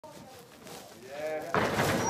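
People's voices, faint and wavering at first, then a sudden louder burst of voices and noise about one and a half seconds in.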